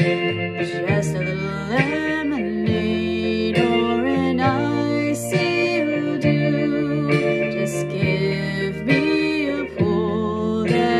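A song playing: plucked guitar accompaniment with a woman singing sustained, wavering notes.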